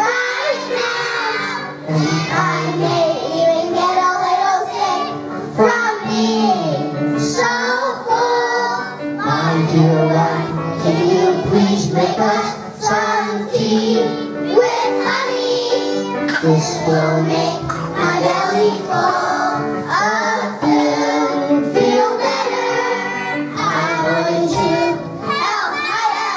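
Children's choir singing a song with instrumental accompaniment, the voices moving in sung phrases over steady held low notes.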